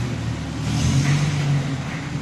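Small van's engine running, picking up slightly in pitch and level about half a second in.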